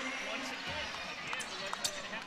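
Basketball game arena ambience: a steady crowd murmur under a ball being dribbled on the hardwood court, with a couple of short sneaker squeaks late on.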